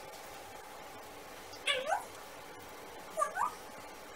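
Two short high calls, each rising in pitch, about a second and a half apart, over a quiet room.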